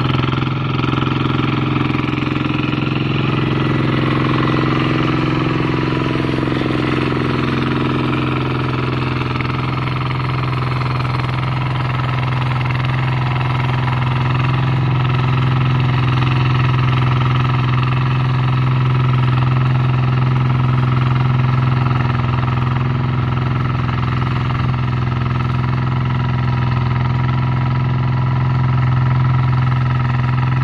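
Two-wheel hand tractor's single-cylinder diesel engine running steadily under load while it pulls a plough through dry soil.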